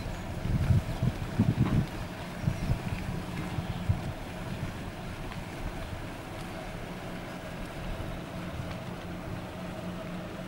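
Wind buffeting the microphone in irregular gusts through the first four seconds, over a steady low hum.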